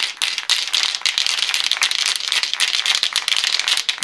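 Aerosol spray can of ink being shaken hard, the mixing ball inside rattling in a rapid, steady clatter.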